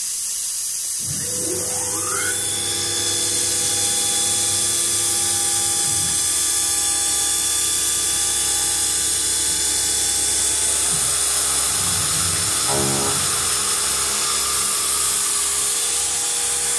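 CNC milling machine spindle with a 10 mm four-flute cutter spinning up with a rising whine about a second in, then running steadily at speed over a constant hiss. A brief buzzing burst comes near thirteen seconds.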